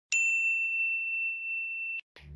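A single bright, bell-like ding from an intro sound effect. It is struck once and rings on at one high pitch, barely fading, then cuts off abruptly after about two seconds.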